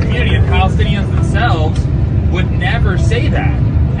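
Steady low rumble of a bus's engine and road noise inside the cabin, under people's voices arguing.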